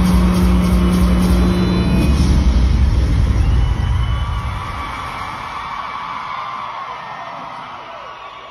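Concert PA sound filmed from the crowd: a loud, deep bass rumble with a held low tone that starts suddenly, stays loud for about four seconds, then fades away.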